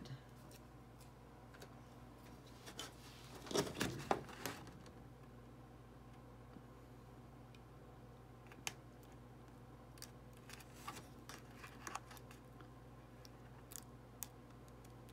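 Faint handling sounds of cut paper on an adhesive cutting mat: a short cluster of clicks and rustles about four seconds in, as the mat is picked up and shifted. Later come scattered light ticks and scrapes as a weeding hook picks at the cut-out pieces, all over a low steady hum.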